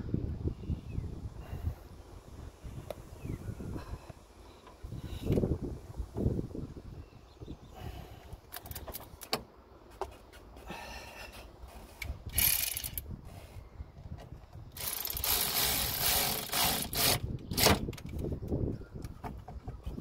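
A hand tool working a car battery terminal clamp as the battery is reconnected and tightened: irregular metallic clicks and scrapes, with a longer spell of dense ratcheting and rattling about three quarters of the way through.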